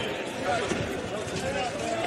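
On-ice game sound from an ice hockey rink with no crowd noise: faint shouts of players over the scrape of skates and the clatter of sticks and puck.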